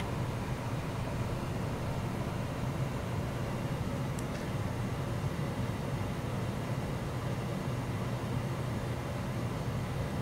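Steady low hum with hiss, with a faint click right at the start and a small tick about four seconds in.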